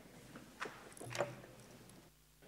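Faint knocks and scrapes of someone getting up from a table and handling things on it, picked up by the table microphone; the loudest knock comes a little after a second in.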